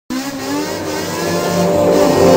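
A car engine revving, with its pitch climbing early and its loudness building steadily after a sudden start.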